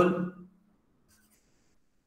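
A man's voice trailing off in the first half-second, then near silence, with only a faint, brief scratch about a second in.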